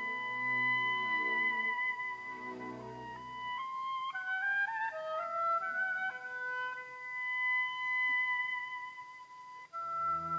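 Orchestral music from a staged opera: held high notes over a low repeated figure that drops out after about three and a half seconds. A short rising run of notes follows, then the held notes return.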